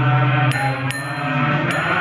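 A man's voice chanting a Sanskrit mantra on a steady held note, with small hand cymbals (karatalas) struck in an even beat about two to three times a second.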